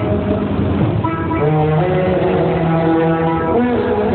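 Loud music playing through a rack of horn loudspeakers on a procession DJ rig, with held notes that step from one pitch to another.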